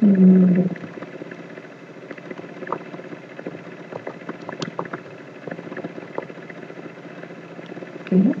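A short, steady hummed 'mmm' from a person at the start, then sparse soft keyboard clicks over a steady low background hum while a search phrase is typed.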